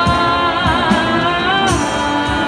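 High school marching band and its front ensemble playing: sustained chords under a sliding, voice-like melody line, with regular percussion strikes.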